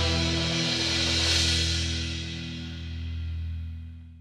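A rock band of electric guitar, bass, keyboard and drum kit holding the song's final chord, with a cymbal crash a little over a second in, the chord and cymbals ringing out and fading.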